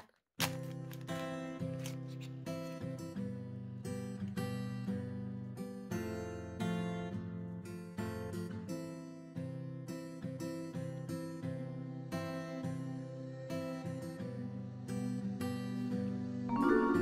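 Background music led by plucked acoustic guitar, with a steady, even rhythm of picked notes.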